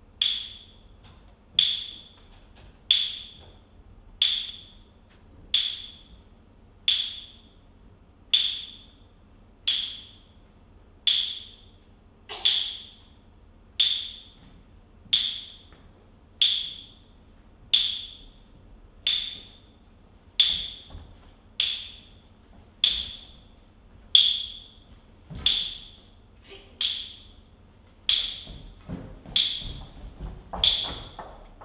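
A short, high ringing tick that repeats steadily, about once every one and a half seconds, like a slow metronome. A few low thumps come in near the end.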